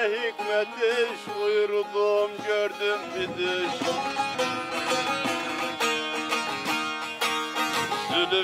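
Bağlama (saz), the long-necked Turkish folk lute, playing an instrumental passage of a folk song: plucked melody notes that give way, about three seconds in, to denser, rapid strummed strokes.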